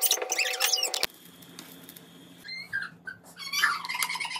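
Rapid high-pitched chirping and squeaking over a faint steady tone, cut off abruptly about a second in. A low hum follows, with scattered softer chirps near the end.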